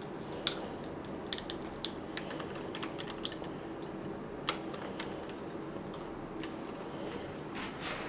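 Small plastic action figure being handled and clipped into the claw arm of a clear plastic display stand: scattered light plastic clicks and taps, the sharpest about four and a half seconds in, with a few more near the end.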